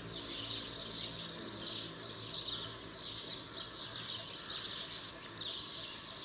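A dense, busy chorus of many small birds chirping at once, their short calls overlapping without a break.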